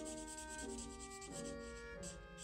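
Marker tip scrubbing on paper in quick back-and-forth strokes while colouring. Soft background music plays underneath, with held notes changing about every two-thirds of a second.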